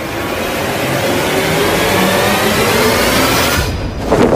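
A loud rushing noise with faint tones slowly rising in pitch, swelling like an engine accelerating, that cuts off suddenly shortly before the end.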